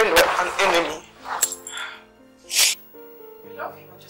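Background film score of held, sustained notes under non-word vocal sounds from a voice: a loud outburst at the start, then short breathy bursts about a second and a half in and again near two and a half seconds.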